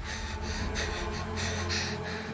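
A girl's quick, frightened breaths and gasps from a horror film trailer, coming every quarter to half second over a low steady drone.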